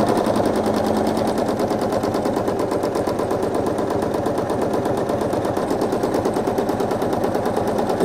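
Quilting machine stitching at a steady fast rate during free-motion quilting, a rapid even chatter of needle strokes.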